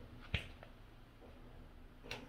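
A single sharp click about a third of a second in, then a fainter tick, over quiet room tone.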